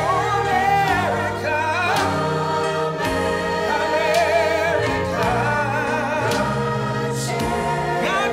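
A man singing a gospel song into a microphone, his voice wavering with vibrato over instrumental accompaniment of long held chords.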